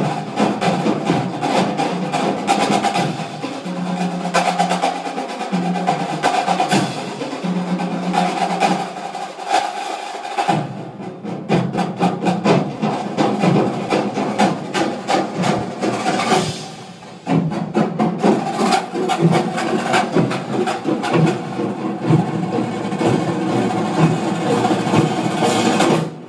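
Marching band music played back through a home-theatre receiver and speakers: a drumline's rapid snare strokes and drum rolls, with held brass notes under the drums for the first ten seconds or so, then drums with fuller band playing, and a brief drop about two-thirds of the way through.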